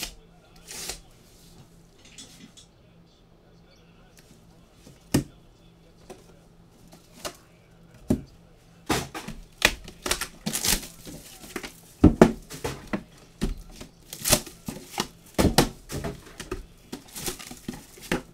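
Trading-card boxes and cases being handled on a table: a few separate clicks, then a busy run of knocks and clatter from about eight seconds in as boxes are lifted and set down.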